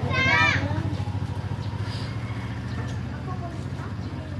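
A steady low engine hum, gradually getting quieter, with a child's high-pitched shout about half a second in.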